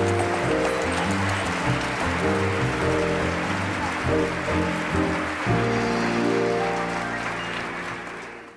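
Live stage band playing closing music, pitched chords changing every second or so, over steady audience applause; the sound fades out near the end.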